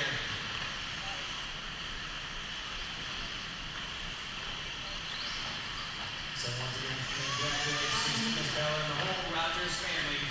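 Steady high-pitched whine and hiss of electric 1/8-scale off-road RC buggies racing on an indoor dirt track, with a voice talking over it from about six and a half seconds in.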